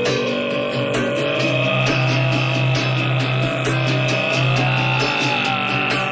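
Live acoustic music: a low held drone and a slowly wavering higher tone sound over evenly repeated guitar strokes.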